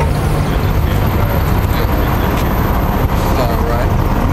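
Steady low rumble of street traffic at a city intersection, with faint voices in the background.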